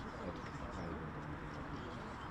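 Outdoor ambience of indistinct, unintelligible voices with a bird calling over a steady background hiss.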